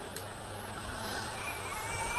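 Low, steady background noise with no distinct event: a pause in a woman's speech over a microphone.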